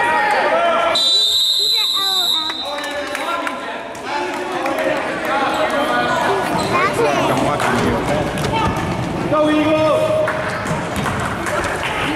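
Referee's whistle, one long blast about a second in, stopping play for a held ball. Around it, spectators' voices echo in the gym and a basketball is dribbled on the hardwood floor.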